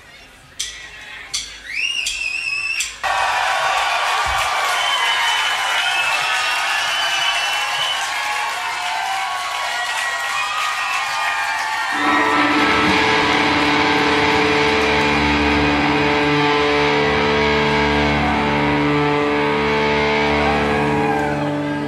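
Live rock music through a PA, from a bass-and-drums band: a heavily amplified electric bass. It comes in abruptly about three seconds in, after a quieter start with rising whistle-like tones. About twelve seconds in it settles into a deep held chord that rings steadily.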